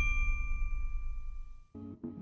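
Intro logo sting: a single bell-like ding rings out in steady tones and fades along with a low swell. Just before the end, music starts with short keyboard chords.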